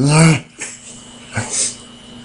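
A man making silly vocal noises: one short, loud pitched yelp right at the start, then a couple of fainter noises.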